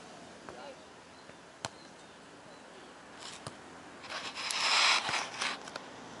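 A sharp slap of a beach volleyball being hit, then a loud scuffing hiss of sand kicked up by a player's feet close to the ground-level microphone, lasting about a second and a half.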